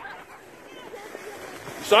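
Faint, distant voices of children on a sledding hill over a low outdoor hush, then a man's loud, excited voice starting near the end.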